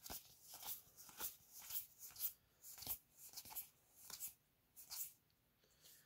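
Trading cards being slid one behind another in the hand, a string of faint, short swishes about two a second.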